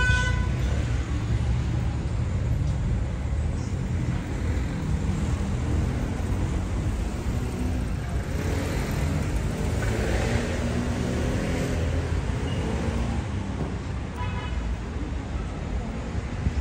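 City street traffic rumbling steadily, with a short horn toot right at the start and another brief toot near the end.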